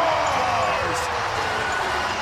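Arena crowd cheering loudly just after a home goal, with one long drawn-out pitched sound sliding slowly down in pitch over the noise.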